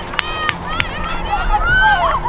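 High-pitched whooping and yelling voices of children sprinting off, over background music, with a few sharp clicks in the first second.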